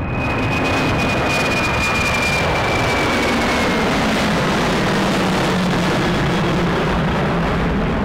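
Jet aircraft passing close by: a loud, steady rush of engine noise with a high turbine whine that slides slowly down in pitch over the first half.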